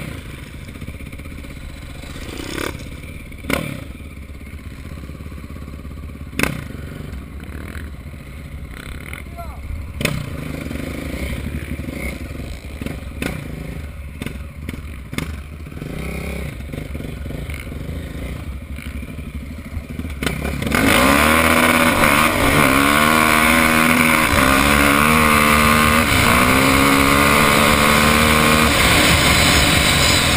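KTM single-cylinder off-road motorcycle idling, with a few sharp knocks. About two-thirds of the way through it is opened up to full throttle, and the engine note climbs and steps through gear changes as the bike accelerates hard, with wind rushing over the helmet-camera microphone.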